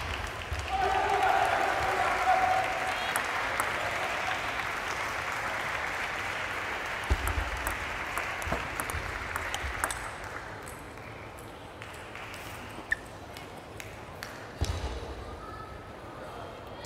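Table tennis ball ticking off the paddles and table in a short rally: a few sharp knocks between about seven and ten seconds in. Under them is a hum of voices in a large hall that fades away about ten seconds in; a single ping and then a thump come near the end.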